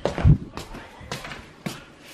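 Footsteps on a tiled floor, a loud thump just after the start and then a step about every half second.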